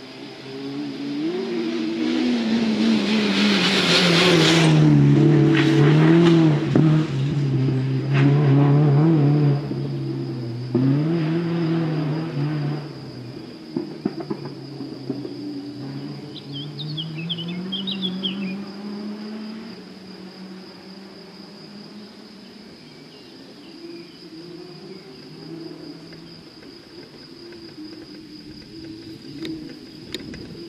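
A rally car's engine at high revs, its pitch climbing and dropping with each gear change, loudest about four to seven seconds in, then fading into the distance over the following dozen seconds. A steady high cricket chirring runs underneath.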